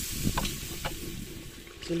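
Onion and spice masala frying in oil in a clay handi over a wood fire, sizzling and easing off toward the end, with a couple of clicks from the wooden stirring stick against the pot.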